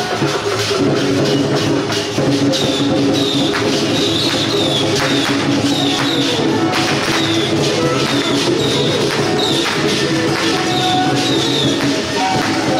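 Taiwanese temple-procession music: sustained wind-instrument tones over steady drum and cymbal strikes. A short high chirping figure repeats about every half second from a few seconds in.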